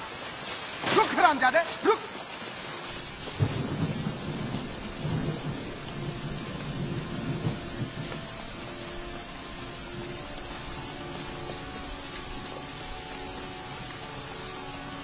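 Steady rain with a low rumble of thunder that starts about three seconds in and dies away over several seconds. A person's voice is heard briefly near the start, and faint held tones come in during the second half.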